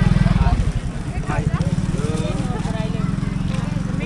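A small engine running steadily at idle, a fast, even low putter, under the chatter of voices in the background.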